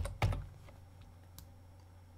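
A computer keyboard tapped a few times, faint and scattered, with a louder knock just after the start, over a steady low electrical hum.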